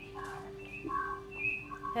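Open telephone line feeding a broadcast: a faint steady tone, with a few short, faint higher tones scattered over it.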